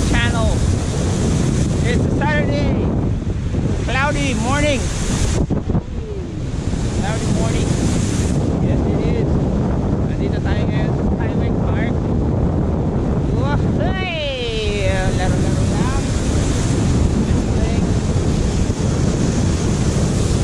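Wind buffeting the microphone of a camera carried by a cable-towed wakeboarder, with water rushing under the board. The noise is loud and steady, dipping briefly about six seconds in.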